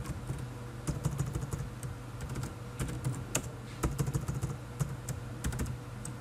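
Computer keyboard typing in short irregular bursts of key clicks with pauses between, as a file name is typed and corrected. A low steady hum runs underneath.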